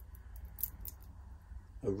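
Stainless steel links of a Doxa Sub 600T dive watch bracelet clicking lightly against each other and the case as the watch is turned in the hand: a scatter of small, faint metallic clicks.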